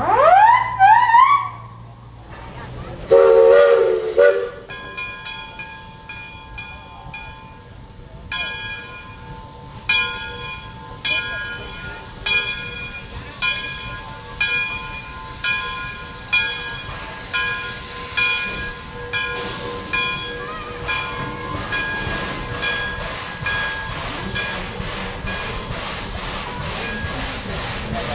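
Steam locomotive Dixiana, a geared Shay, sounding its steam whistle: short toots rising in pitch, then one longer blast. Its bell then rings about once a second, each strike dying away, over the hiss of steam as it pulls away.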